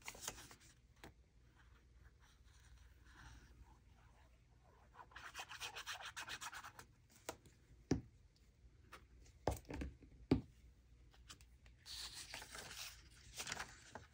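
Paper being handled and rubbed while a small torn scrap is glued onto a journal page: dry rubbing and rustling in two stretches, about five seconds in and again near the end, with a few light knocks in between.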